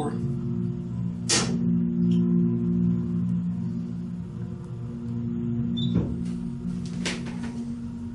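Hydraulic elevator pump motor humming steadily while the car travels up, a sound the riders take for a Canton pump. A sharp click a little over a second in, and two more clicks near the end as the hum fades.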